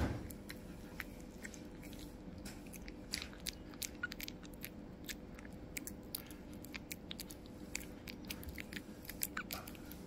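A baby vervet monkey chewing small pieces of hand-fed food, heard as irregular little crunches and clicks over a steady low hum, with a sharp click right at the start.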